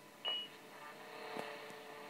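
A short, high single beep through a Yaesu FT-817's speaker: the KQ2H 10-metre FM repeater's courtesy tone after a station stops transmitting. After it comes a faint hum and hiss from the still-open repeater channel, with one click.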